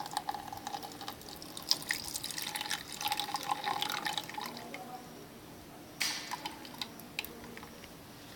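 Water poured in a thin stream into a plastic measuring beaker, trickling and splashing irregularly for about four and a half seconds before stopping. A couple of short splashy sounds follow near the end.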